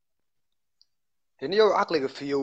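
Dead silence with a single faint tick, then a man's voice starts talking again about a second and a half in.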